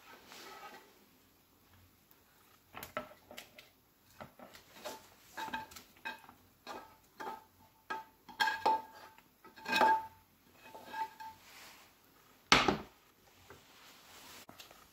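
A black slotted spatula scraping and knocking fried potatoes out of a tilted frying pan into a bowl with a wire sieve, to drain them of oil. It makes a quick, uneven run of clicks and scrapes, some with a faint ring, then a single loud knock near the end.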